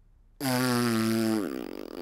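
A large cartoon horn blown hard, giving one low, steady blast about a second long that then sags in pitch and peters out. It is a failed attempt to play the horn: it doesn't sound quite right.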